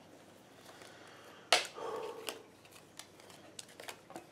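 Uno playing cards being laid and slapped down onto a hardwood floor: one sharp slap about a second and a half in, then a few lighter card taps and slides.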